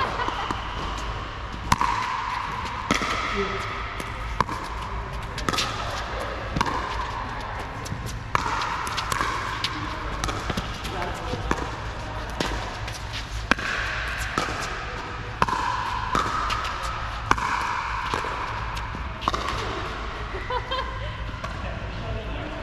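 Pickleball paddles striking a hard plastic pickleball during a rally: sharp pocks about every one to two seconds, each ringing briefly in the large indoor hall.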